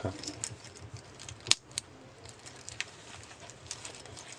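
Faint metallic clicks from handling a stainless steel watch bracelet and its butterfly clasp, with two sharper clicks close together about a second and a half in.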